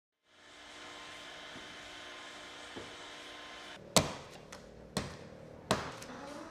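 A steady machine hum in a clay workshop, broken by three sharp knocks about four, five and nearly six seconds in.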